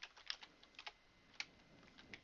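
Faint computer keyboard typing: a few separate keystrokes at an uneven pace as a word is typed.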